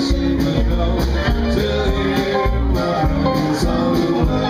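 Western swing band playing live: electric and acoustic guitars over a steady drum beat, in an instrumental passage with no singing.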